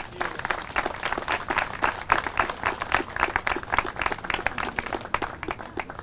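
Audience applauding: many hands clapping in a dense, continuous patter.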